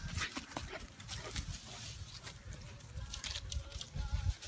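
Bernese mountain dog moving about on grass strewn with fallen leaves: an irregular run of short rustles and crunches from paws and leaves, over a low rumble from the phone being carried at a run.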